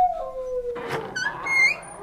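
A dog's long howl, sliding slowly down in pitch and fading out just under a second in, followed by a few short high chirps.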